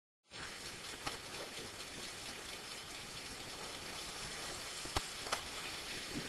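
Lit manual fuses on an amateur rocket burning with a faint, steady hiss, with a few small pops.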